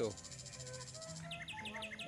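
Soft background music with low held notes, under outdoor ambience: a rapid high insect trill in the first second, then a run of about five quick descending bird chirps near the end.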